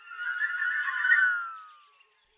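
Mobile phone ringing: a bright tone of several notes gliding slightly downward, swelling for about a second and then fading away.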